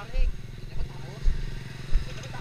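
Steady hum of an idling vehicle engine, with several low thuds on the microphone and faint voices in the background.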